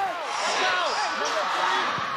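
Several voices shouting and calling over one another at different pitches, over a steady background wash of crowd noise at an outdoor soccer match.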